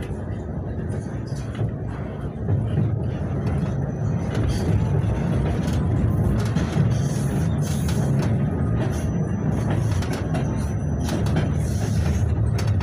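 KTM-28 (71-628-01) tram running, heard from inside the car: a steady low rumble of wheels on rails with scattered clicks, and a faint rising whine in the first half.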